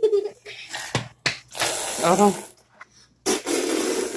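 Soft, sticky slime being squeezed and kneaded by hand on a tabletop, giving wet squelching and rubbing noises, with short bits of a child's voice between them.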